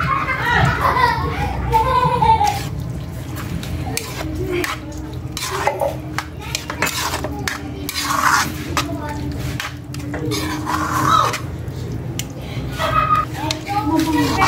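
A metal spoon scrapes and clinks against a metal frying pan while stirring sliced mushrooms into a thick ground-pork tomato sauce, in a run of irregular knocks and scrapes.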